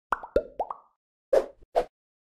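Logo intro sound effect: four quick plopping pops in the first second, then two louder, fuller hits about a second and a half in.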